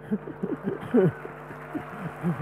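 Audience laughing, with short chuckles from a man at the microphone.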